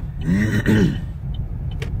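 A person clearing their throat, two short rasping, voiced pushes about half a second in, over the steady low engine and road noise inside a moving car.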